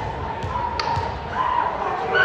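A volleyball being bounced on a hardwood gym floor before a serve, a few dull thumps about half a second apart, with players' raised voices calling out over it.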